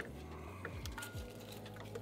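Quiet clicks and light rattles of a plastic gauge cluster and its wiring being handled at an open dash, over soft background music.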